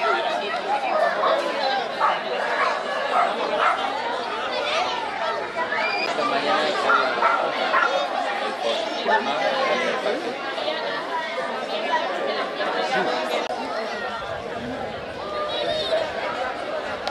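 Crowd of adults and children chattering, a steady mix of many overlapping voices with occasional higher children's calls.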